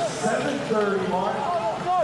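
Speech only: a broadcast commentator talking.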